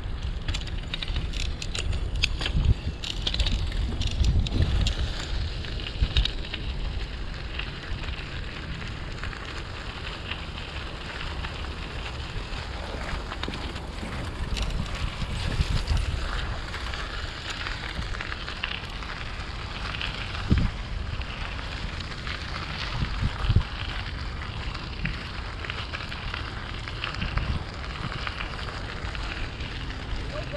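Riding a bicycle along a trail: wind on the microphone and a steady low tyre rumble with crackling from the path surface, broken by a few sharp thumps from bumps about 3, 6, 20 and 23 seconds in.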